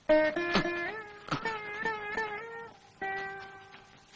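Film background score: a plucked string instrument playing a slow melody of held notes, some of them bending in pitch.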